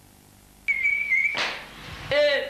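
Quiet at first, then a steady high-pitched tone for about half a second, cut off by a short hiss-like burst that fades away.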